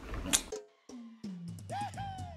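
Edited-in background music comes in about a second in, with held low notes and a higher note that glides down. It follows a short click and a moment of near silence.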